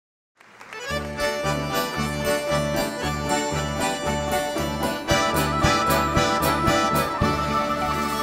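Russian folk-instrument orchestra playing an instrumental introduction: a steady bass beat about twice a second under a melody, with a bright high line joining about five seconds in. The music starts just under half a second in, after a brief silence.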